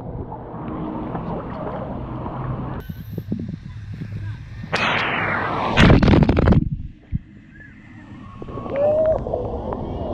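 Pool water splashing and churning against a waterproof camera as it goes through the surface, loudest for a couple of seconds midway, then muffled under the water. Children's voices come in near the end.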